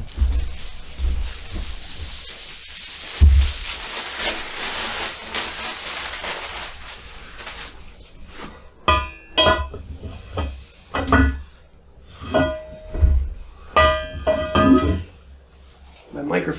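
Steel square-tubing megatree segments being handled and set down: rustling and a dull thump about three seconds in, then a run of short ringing metallic clanks in the second half.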